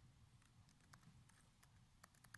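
Near silence with a run of faint clicks from a laptop keyboard being typed on, in the second half.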